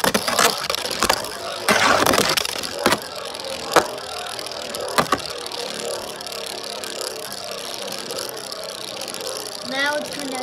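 Beyblade spinning top whirring on its tip after a launch, with sharp knocks in the first five seconds as it strikes the stadium, then settling into a steadier, quieter whir.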